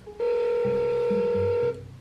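Telephone ringback tone of an outgoing call heard through a phone's speaker: one steady ring lasting about a second and a half, the sign that the called phone is ringing.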